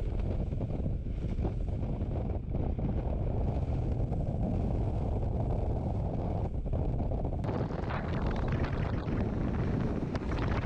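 Heavy wind buffeting the microphone on a motorboat running at speed across choppy water. The hull's rush through the waves and spray runs under it, and turns hissier about three quarters of the way in.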